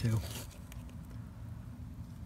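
Low, steady background hum with a few faint clicks about half a second in, the sound of parts of the metal latch mechanism being handled.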